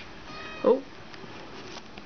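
Kitten giving a single short meow that falls in pitch, about half a second in.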